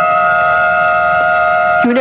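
Dramatic music cue holding a sustained high chord, which cuts off near the end as a voice comes in.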